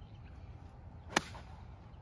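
A 52-degree wedge striking a golf ball: one sharp click of the clubface on the ball about a second in.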